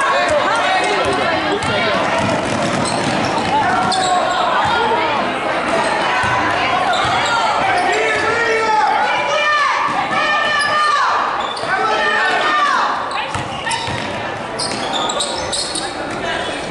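Live basketball play on a hardwood gym court: the ball dribbled in repeated bounces, shoes squeaking in short rising-and-falling chirps, and players' and spectators' voices, all echoing in the large gym.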